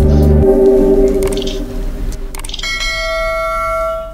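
The end of a bansuri flute song over a backing track: the backing stops about half a second in and the last note fades. About two and a half seconds in come a couple of clicks and a sustained bell chime, a subscribe-button sound effect.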